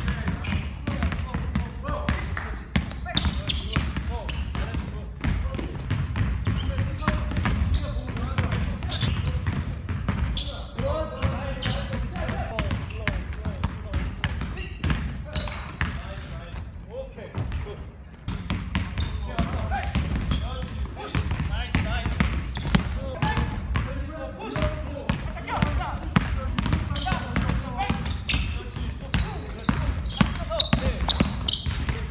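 Basketballs dribbled hard and fast on a hardwood gym floor: a dense, irregular run of bounces from several players at once, with a short lull about two-thirds of the way through.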